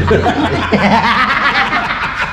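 A group of men laughing together.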